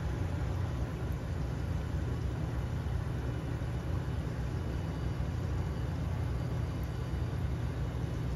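Curry buns deep-frying in a commercial fryer: a gentle, steady sizzle of hot oil over a constant low hum of kitchen equipment.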